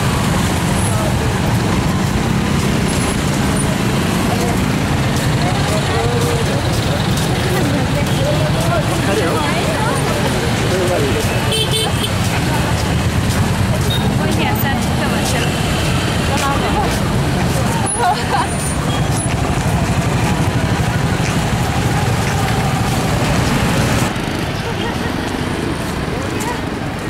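Busy road traffic noise: passing motorcycles, cars and trucks with a steady low rumble, mixed with voices from a crowd walking along the road. A brief horn-like tone sounds about halfway through.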